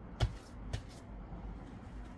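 Hands patting and handling a large, soft, risen bread dough: a short pat a fraction of a second in, the loudest sound, and a fainter one about three-quarters of a second in.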